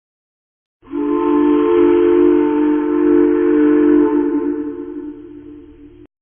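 A title-sequence sting: a single held chord of several steady tones. It starts suddenly about a second in, holds, then fades away over the last two seconds and cuts off.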